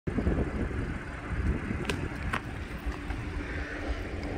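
Wind buffeting the microphone, with an uneven low rumble, and two light clicks about two seconds in.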